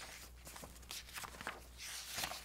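Faint rustling and handling noises: several short soft scrapes and a longer rustle near the end, over a low steady hum.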